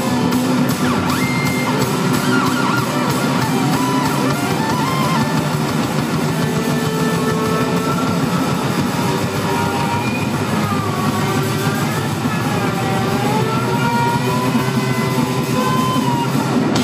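Live rock band playing an instrumental passage: electric guitar and bass guitar over a drum kit, played loud and steady. In the second half the guitar notes bend up and down.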